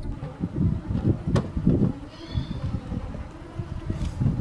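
A car on the move, with a low, uneven rumble of road and wind noise and a single click about a second and a half in.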